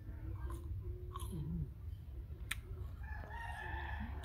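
A rooster crowing, with a single sharp click about two and a half seconds in.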